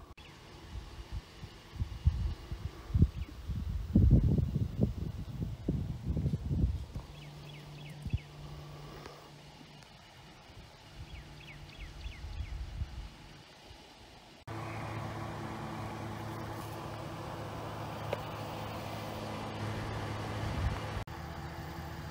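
Outdoor ambience with irregular low buffeting rumbles on the microphone, loudest about four seconds in. About two-thirds of the way through it cuts suddenly to a steady low motor hum, like an idling vehicle.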